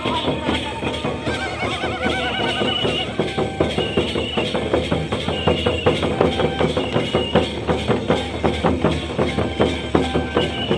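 Live Santhal dance music: drums beating a quick, steady rhythm, with a high, wavering piping tune in short held notes over them and crowd voices underneath.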